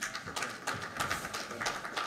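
Audience applauding: many overlapping hand claps.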